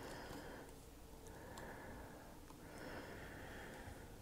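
Faint breathing, three soft breaths through the nose, with a few light clicks from handling the rifle.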